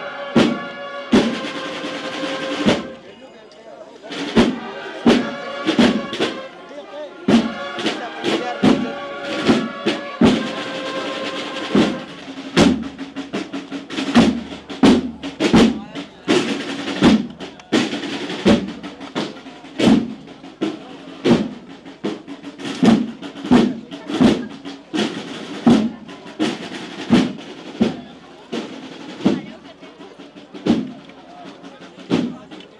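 Processional brass-and-drum band playing a march: brass melody over drums, then from about twelve seconds in the brass falls silent and the drums carry on alone with a steady beat.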